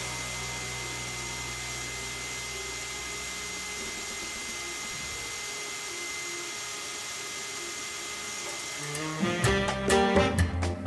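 Quiet background music under a steady even hiss; the held low notes fade out around the middle, and a lively swing-style tune with brass starts near the end.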